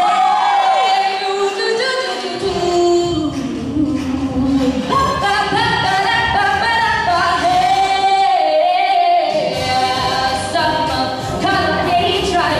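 Two girls singing a show tune into handheld microphones through a PA in a hall, holding long notes. A fuller musical accompaniment comes in about two seconds in.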